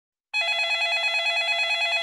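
Telephone ringing with a fast bell-like trill, signalling an incoming call: one long ring that starts about a third of a second in.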